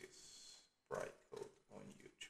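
Quiet typing on a computer keyboard, with faint mumbled voice sounds in short bursts, the words muttered under the breath while typing.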